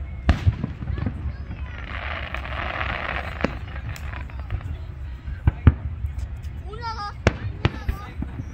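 Aerial fireworks bursting overhead: a string of sharp bangs, about eight over the stretch, with a crackling hiss lasting a second or so near the middle. A steady low rumble runs underneath.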